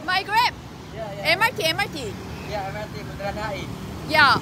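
Short bits of talk over the steady noise of street traffic, with motor scooters running close by.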